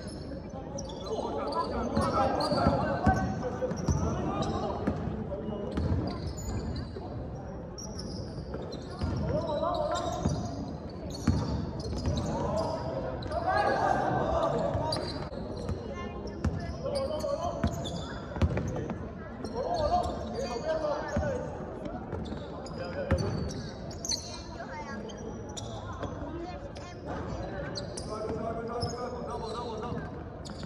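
Basketball being dribbled on a hardwood court, with repeated bounces, alongside players' calls and voices in a large hall.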